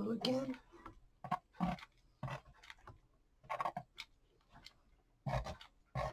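Hot-glue gun and cardboard being handled on a craft table: a scattering of short, irregular clicks and taps, with a brief wordless voice sound at the very start.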